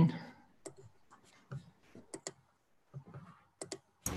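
Scattered clicks from a computer mouse and keyboard, about ten short, sharp clicks spread unevenly over a few seconds, made while screen sharing is started on a video call.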